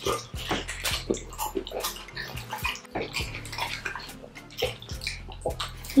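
Close-miked wet eating sounds: chewing and smacking on mouthfuls of meat and fufu in slimy ogbono soup, a run of irregular squelches and lip smacks.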